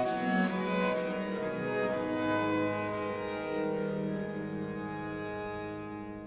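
Early-music ensemble playing an instrumental passage on bowed string instruments. From about two seconds in it holds long sustained notes, which slowly fade near the end.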